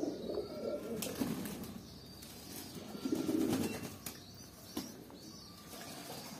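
A flock of domestic pigeons cooing, with low swells of cooing near the start and about three seconds in, and a few short wing flaps in between.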